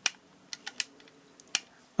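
A few sharp clicks and small ticks, the first the loudest, from a transformer soldering gun being worked on a twisted copper wire joint, with its trigger switched off and on.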